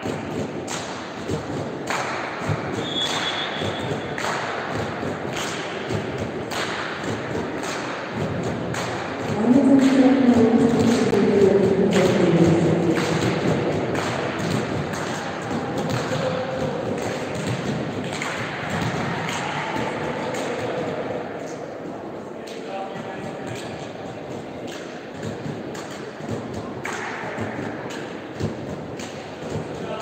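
Volleyball being hit during play in a sports hall: repeated sharp hits and thuds, with players' and spectators' voices. A short high whistle blast about three seconds in, and louder shouting with falling pitch from about ten seconds in.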